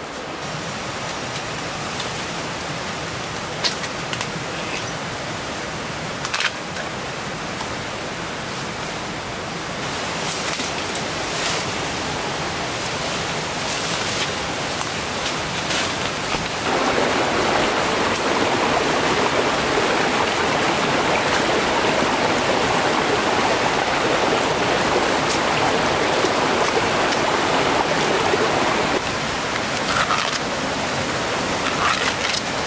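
Small rocky stream running: a steady rushing of water, with a few sharp clicks and rustles in the first half. The rushing becomes louder and fuller a little past the middle.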